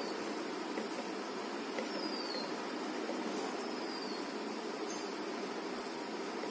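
Steady low background noise with sparse faint clicks of fingers mixing rice and of chewing. A few faint, short, falling high chirps come at intervals over it.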